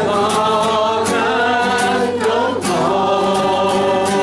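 A man singing a slow worship song while strumming an acoustic guitar, his voice held in long sustained notes.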